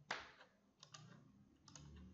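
Faint clicking at a computer desk. There is a sharper, louder knock right at the start, then two quick double clicks, the second pair about a second after the first.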